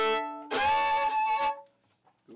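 A fiddle playing: the last of a run of short notes, then one long held note from about half a second in that stops about a second and a half in.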